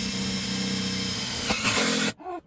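Cordless impact driver running steadily as it drives a cement-board screw through a double layer of metal flashing. It stops near the end.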